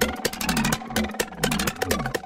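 A tech-house/techno track plays with a steady beat of kick drum and hi-hat ticks. Under the beat, a low synth bass line glides in pitch on each repeat.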